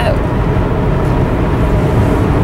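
Steady road noise from tyres and engine inside the cabin of a car driving at highway speed, mostly low in pitch and unchanging.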